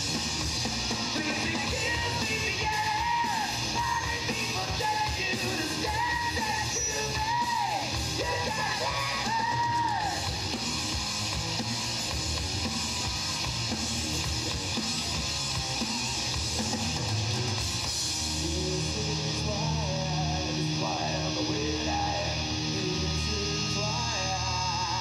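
Live thrash metal band playing through a PA: distorted electric guitars, bass and drums. A singer's yelled vocal runs over the band for the first ten seconds or so, then the band plays on without it. The recording is made from within the crowd.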